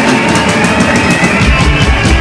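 Loud band music: a rock-country band with drum kit and guitar playing on.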